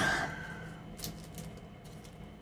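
Faint handling of trading cards on a tabletop, with a couple of small, sharp ticks about half a second apart.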